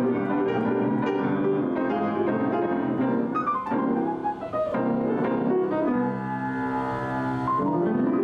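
Two grand pianos played together in an improvised duet, one of them a white-painted Steinway grand. Dense chords and fast runs, with runs sweeping down the keyboard about halfway through, a held chord about six seconds in, and a run sweeping up at the end.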